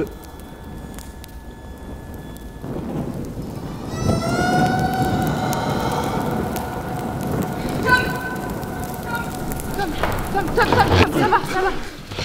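Film sound design of a blazing fire: a dense roar of flames swells in about three seconds in and holds, under a sustained droning tone. Voices break in near the end.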